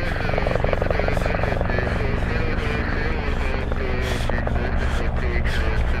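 A helicopter running steadily with a fast rotor chop, and a voice talking over it.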